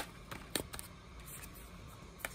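Tarot cards handled in the hands while a card is drawn from the deck: a few soft card clicks, the clearest about half a second in.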